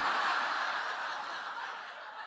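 Live audience laughing at a joke, the laughter dying away steadily.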